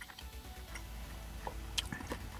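Faint chewing of a bite of fried boneless chicken, with a few small mouth clicks near the end.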